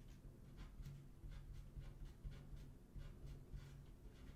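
Pen writing on paper: a faint run of short scratching strokes as small tic-tac-toe grids and X's and O's are drawn.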